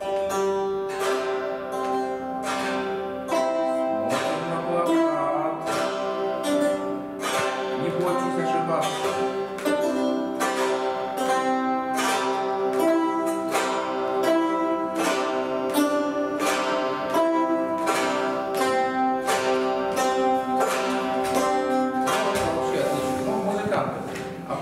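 Several Khakas chatkhans (wooden board zithers) plucked together in unison, playing a simple melody at a steady pulse of about two notes a second, with the strings ringing on. The group is learning the tune from number notation.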